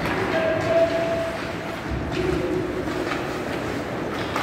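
Ice hockey play in a rink: skates scraping and sticks on the ice, with a sharp knock just under a second in. Two long, drawn-out calls sound over it, a higher one early and a lower one about two seconds in.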